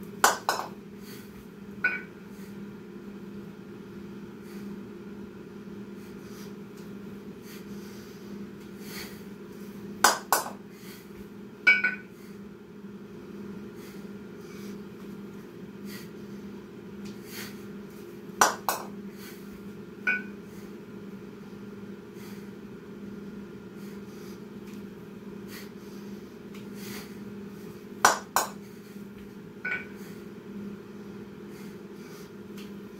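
A pair of kettlebells clanking against each other during slow repetitions of the double-kettlebell clean and jerk. Each rep gives a sharp double clank, then a single ringing clink under two seconds later, and the pattern repeats about every nine seconds over a steady low hum.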